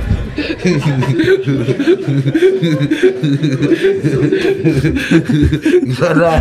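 Men laughing: a long run of short, rhythmic chuckles.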